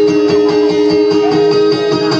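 Guitar plucked in a fast, steady repeating rhythm over two held notes.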